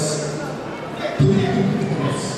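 People's voices calling out in a large sports hall, with one loud shout breaking in a little over a second in.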